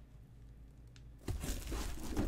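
Quiet at first; about a second in, a cardboard shipping box being handled and shifted in the hands, with irregular rustling and scraping of skin on cardboard.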